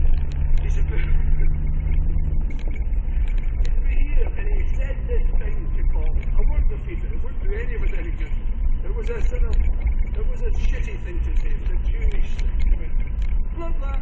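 Off-road vehicle's engine running at low speed on a bumpy gravel track, heard from inside the cab; its steady note drops about two and a half seconds in. Short knocks and rattles from the rough track come through over the drone.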